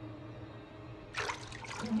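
Bathwater splashing and streaming as a person rises out of a clawfoot tub, starting suddenly about a second in, over a low, steady musical drone.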